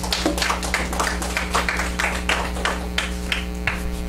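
A small room audience clapping by hand, the claps irregular and thinning out near the end, over a steady mains hum.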